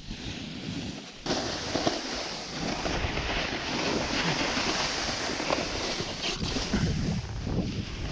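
Snowboard sliding and scraping down slushy spring snow, a steady rushing hiss that starts suddenly about a second in as the board drops onto the slope, with wind on the microphone.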